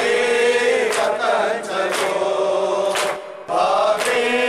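A man reciting an Urdu noha (Shia lament) in a chanting melody without instruments, with other men's voices chanting along. The voices break off briefly a little past three seconds, then resume.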